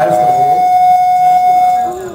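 Sound-system feedback: one loud, steady, single-pitched tone that holds for nearly two seconds and stops just before the end. It comes as the volume is being turned up to play a recording that isn't coming through.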